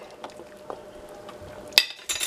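Beef broth simmering in a stainless steel pot: faint bubbling with a few small ticks over a thin steady hum, and one sharp click near the end.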